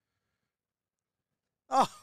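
Dead silence with no crowd or field sound, then a man's voice exclaiming "Oh" with a falling pitch near the end.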